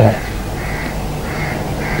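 A steady low background hum during a pause in a man's speech, with three faint short calls in the background, about half a second apart.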